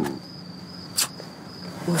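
Crickets chirping in a steady high-pitched drone, with a single short click about a second in.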